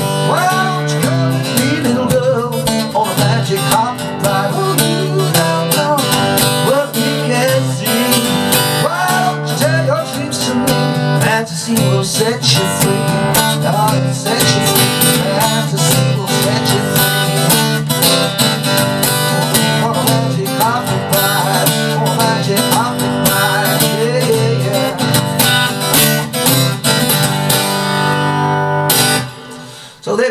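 Acoustic guitar strummed steadily, playing through the song's chord changes, then stopping near the end.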